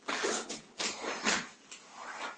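A karateka performing the last techniques of a kata: about five short, sharp rushes of sound in two seconds, from his forceful exhalations and the swish of his karate uniform with each movement.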